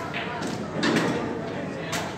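Indistinct chatter of people in a large room, with three sharp clicks or knocks.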